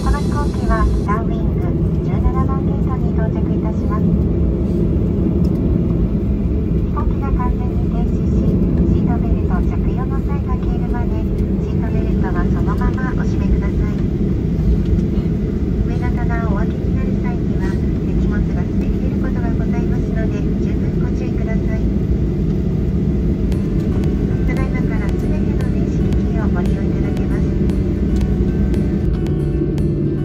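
Steady low rumble inside a jet airliner's cabin as it taxis with its engines at idle after landing, with faint voices coming and going over it.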